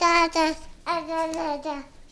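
A young child singing in a high, sing-song voice: a few short syllables, then several longer held notes that stop just before the end.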